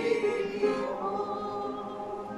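A group of voices singing a slow gospel hymn with piano, holding the last long note of a verse as it fades.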